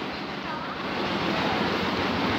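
Steady rushing of wind buffeting the phone's microphone, a low uneven rumble under a hiss.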